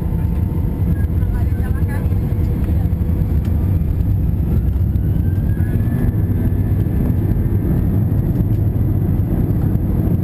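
Steady low rumble of an Airbus A321's engines and airframe, heard inside the cabin over the wing as the jet taxis onto the runway.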